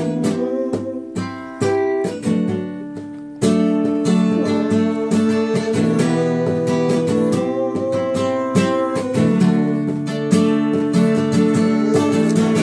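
Recorded acoustic-guitar pop song playing, with steady strummed chords and a melody line; it gets louder about three and a half seconds in.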